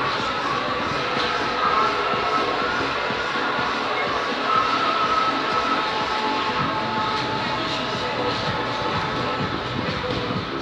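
Background music playing over a steady din of noise, with faint indistinct voices.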